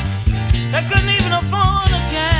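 Blues band recording playing, with a drum beat, a walking bass line and a lead melody whose notes bend up and down in pitch.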